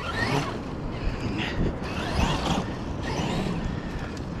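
Traxxas X-Maxx 8S electric RC truck driving off across loose beach sand on paddle tires, throwing up sand. It is a noisy sound with no clear motor note, swelling a few times through the middle.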